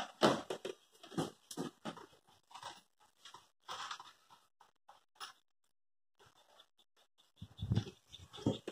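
Faint handling noise: short clicks and rustles at irregular intervals as tools are handled, stopping for about two seconds near the end.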